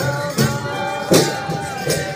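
Large hand-held frame drums beaten together in a steady beat, about one stroke every three-quarters of a second, with voices singing over them: music for the Kauda folk dance.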